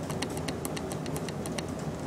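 Small three-phase motor with a fan blade, driven by an H-bridge at a slowed speed, ticking evenly about eight times a second over a low hum.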